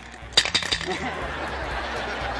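A few sharp metallic clinks in quick succession about half a second in, then an audience laughing and murmuring.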